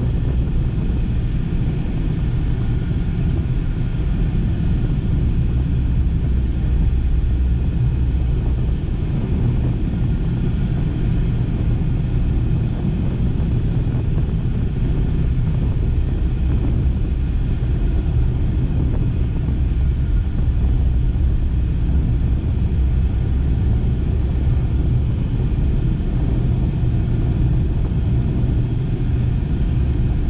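Steady low rumble of a car driving along a highway at road speed: engine and tyre noise.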